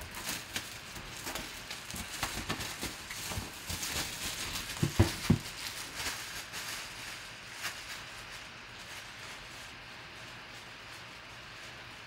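Handling noise from a cardboard box with plastic wrap: scattered crinkles and light taps. Two heavier thumps come about five seconds in as the box is set down on the table.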